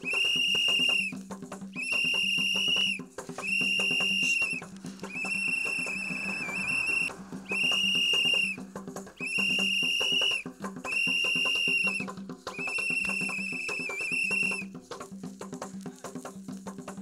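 A whistle blown in about eight long, steady, high blasts, each roughly a second long and evenly spaced, over a steady percussion beat. The blasts stop near the end, leaving the percussion alone.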